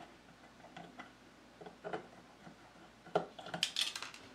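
Faint small clicks and taps of a soldering iron and thin wires being handled at a bench vise while a wire is soldered on, with a quick run of sharper ticks near the end.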